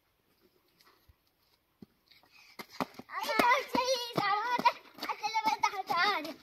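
Near silence, then from about two and a half seconds in a young child's high voice singing, its pitch wavering, with a few sharp clicks among it.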